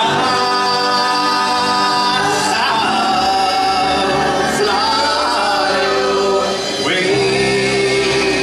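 Live country music: a man sings lead with a group of voices joining in over the band, holding long notes that slide to new pitches a few times.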